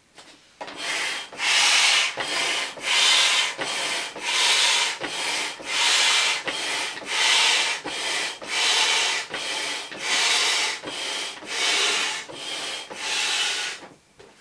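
Stand air pump pushing air through its hose into an inflatable vinyl pony: a run of rhythmic hissing strokes, a loud one about every second and a half with a softer one between, starting just under a second in and stopping near the end.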